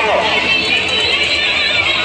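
Fairground din: music playing over a busy hubbub of voices, with one short spoken word at the start.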